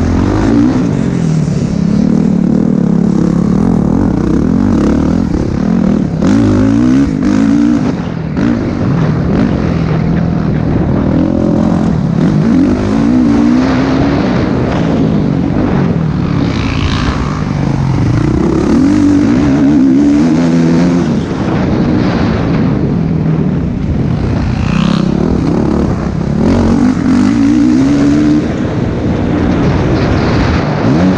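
Motocross dirt bike engine heard from the bike itself, racing at hard throttle, its pitch climbing and dropping over and over through the straights and corners.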